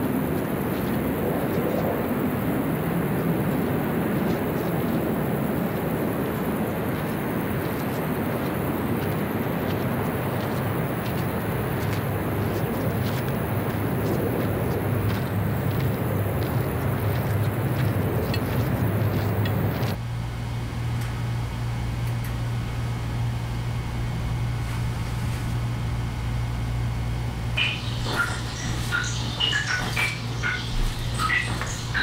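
A steady rushing noise that cuts off suddenly about two-thirds of the way in, leaving a low steady hum; faint high clicks and chirps come in near the end.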